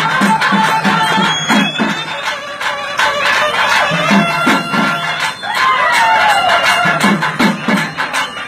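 Live karakattam folk music: a nadaswaram-type double-reed horn playing a gliding, ornamented melody over the steady strokes of a thavil barrel drum.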